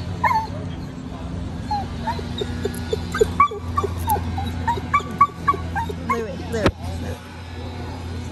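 A dog whining, a quick string of short, high whimpers and yips, with one louder sharp sound near the end.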